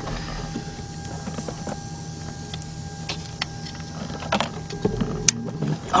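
An ignition-coil wiring connector and its wires being handled and plugged back in: a scatter of small plastic clicks and rattles, busiest a little past four seconds and again about five seconds in, over a steady background hum.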